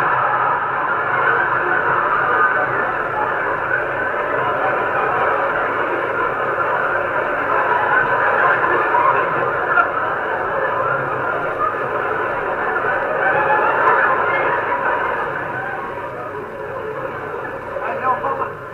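Theatre audience laughing and applauding in a long, steady wave that dies down near the end, heard on an old recording with little treble.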